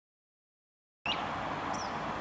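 Silence for about the first second, then outdoor background noise cuts in abruptly, with two short high bird chirps, one as it starts and one under a second later.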